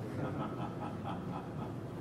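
Steady low room hum, with faint, evenly spaced higher sounds above it.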